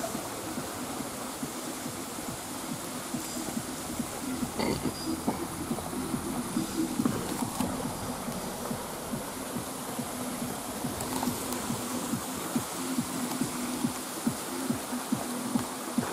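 Running water of a small stream, an even rushing. A steady low hum and many small knocks run along with it.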